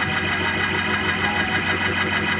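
Organ playing sustained, held chords as worship music.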